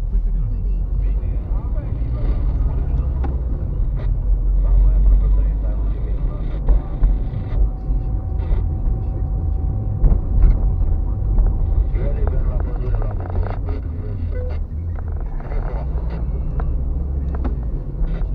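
Car cabin noise while driving slowly: a steady low engine and road rumble, with a few sharp knocks and a faint steady tone for several seconds in the middle.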